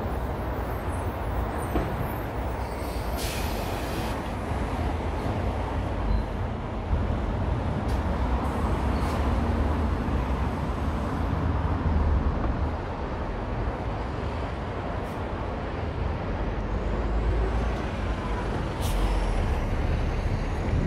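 City road traffic: cars and other vehicles driving past on a wide multi-lane street, a continuous rumble that swells and fades as vehicles go by, with a short hiss about three seconds in.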